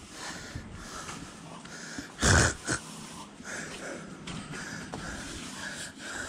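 A man breathing heavily with a wheezing sound while handling a concrete pump hose, with one louder, noisy breath a little over two seconds in.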